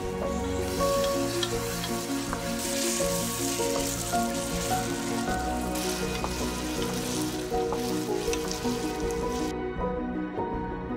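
Onion and tomato masala sizzling as it fries in a pot, stirred with a wooden spatula; the sizzle stops just before the end. Soft background music plays throughout.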